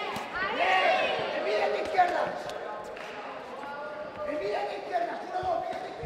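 Voices around a kickboxing ring, with a few sharp thuds of blows landing, the loudest about two seconds in.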